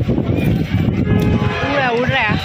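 Strong wind from a sudden dust storm buffeting the microphone in a steady low rumble, with a voice coming in near the end.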